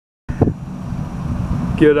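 Low steady outdoor rumble with a short thump just after the sound starts. A man's voice begins near the end.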